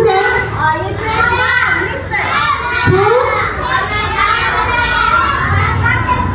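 Many young children talking and calling out at once, a steady jumble of overlapping voices with no single speaker standing out.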